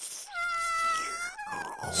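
A thin, high-pitched whine, like a cartoon whimper of fright, drawn out for about a second and sliding slightly downward, followed by a fainter second whine that drifts lower.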